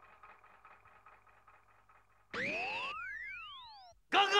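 Synthesizer sound effect. A faint steady electronic hum with soft rapid ticking runs for the first two seconds. Then a tone swoops up and holds briefly, and crossing rising and falling glides fade away.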